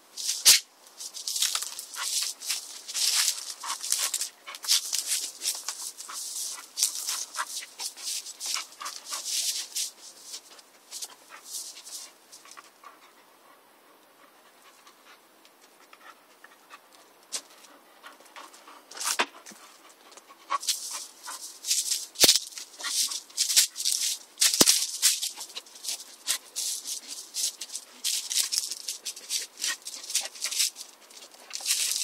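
Bull terrier pushing its nose through garden plants and dry leaves: bursts of rustling and crackling, going quiet for a few seconds in the middle.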